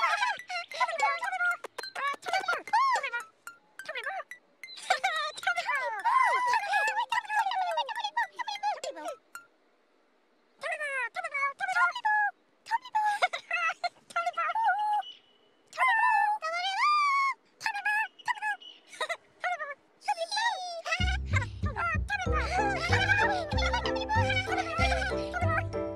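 High-pitched babbling character voices in quick, gliding, sing-song calls with short gaps and a brief silence partway through. About three seconds before the end, children's TV music with a bass line comes in underneath.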